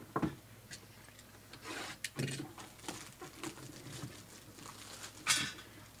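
Clear plastic shrink-wrap crinkling and being pulled off a cardboard box by hand, with light rubbing and handling sounds and one louder crinkle about five seconds in.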